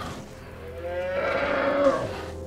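A giant buffalo-like film creature (the Sker Buffalo) gives a long, low lowing call that starts about half a second in, rises slightly in pitch and grows louder toward the end.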